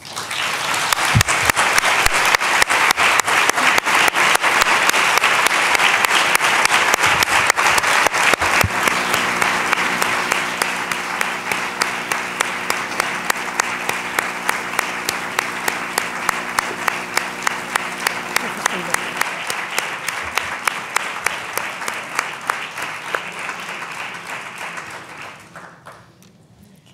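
A large audience applauding at length, loudest in the first few seconds. Later the clapping falls into an even rhythm, then dies away near the end.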